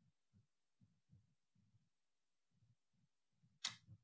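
Near silence: the quiet of a video-call meeting while the mayor waits for questions, broken by one brief sound near the end.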